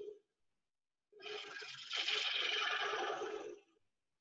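Bowl gouge cutting the face of a spinning wooden bowl blank on a lathe: a steady hiss of shavings that starts about a second in and lasts about two and a half seconds. It is a light pass, taking off about a sixteenth of an inch.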